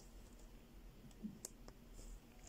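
Needle and thread being worked through cross-stitch fabric stretched in an embroidery hoop: a few faint ticks over near silence, the sharpest about one and a half seconds in.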